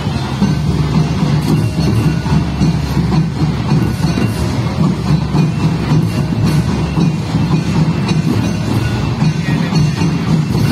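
Folk hand drums played in a steady, fast, repeating rhythm.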